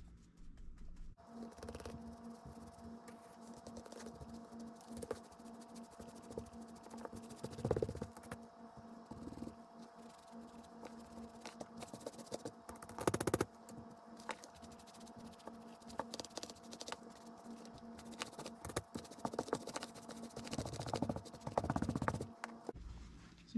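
Stiff bristle paintbrush scrubbing acrylic paint into the fabric of a bag, a continuous run of quick, dry scratching strokes, with a couple of louder knocks from handling the bag.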